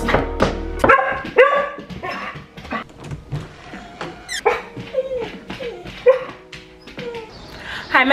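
A dog's short, irregular yelps and whines, each call brief and bending in pitch.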